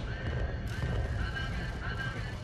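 Live band music: a pulsing low bass-and-drum sound under short, wavering high tones.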